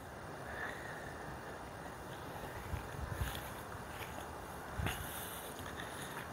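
Steady low outdoor background noise with a few soft footsteps on grass, about three of them in the middle of the stretch.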